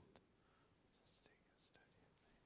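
Near silence, with faint whispered words: a couple of soft hissing syllables about a second in and again near the end, and a faint click just after the start.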